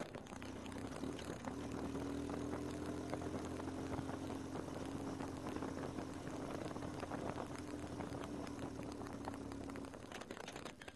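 Motorcycle engine recorded from an onboard camera: a steady hum holding one pitch over wind and road noise. The hum comes in about a second and a half in and cuts off abruptly near the end.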